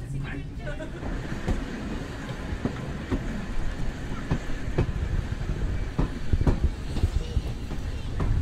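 Railway coach running along the line: a steady low rumble, with a knock from the wheels over the rail joints every second or so, unevenly spaced.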